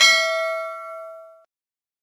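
A single bell-like ding, struck once and ringing with several metallic overtones, fading away about one and a half seconds in.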